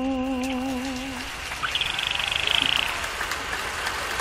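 A man's long hummed note with vibrato, the close of the song, dies away about a second in. It is followed by a steady outdoor hiss with a high, thin tone lasting about a second near the middle.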